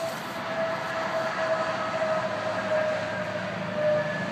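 Heavy-haul tractor-trailer with a long multi-axle lowboy trailer rolling slowly past: a steady rumble of tyres and running gear with a steady whine over it.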